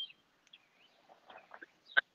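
Near silence on a video-call audio feed that keeps cutting out, broken only by a few faint, very short high chirps and snatches of sound.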